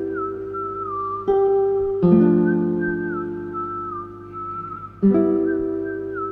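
Melodic acoustic guitar loop at 80 BPM in C: ringing chords, with new chords struck about a second in, at two seconds and near five seconds. Over them a high, thin lead melody slides downward in small glides, and the phrase repeats as the loop comes round.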